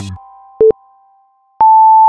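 Workout interval timer beeping the end of a rest period. A short low beep comes about half a second in, then a longer, higher beep near the end as the countdown reaches zero.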